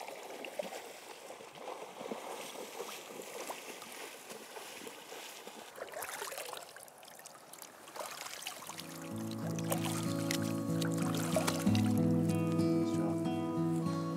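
River water trickling and splashing around a salmon held by hand in the shallows. Background guitar music comes in about two-thirds of the way through and becomes the loudest sound.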